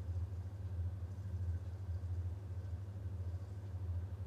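A steady low hum with faint hiss, unchanging throughout: background room or equipment noise with no one speaking.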